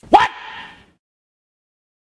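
A man's single loud, drawn-out shout of "What?", lasting under a second.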